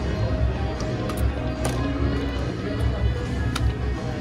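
Slot machine game music and electronic chimes as the reels spin, over the steady din of a casino floor with background chatter and a low rumble.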